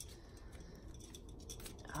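A deck of tarot cards being shuffled by hand: faint papery flicks and light taps of the cards against one another.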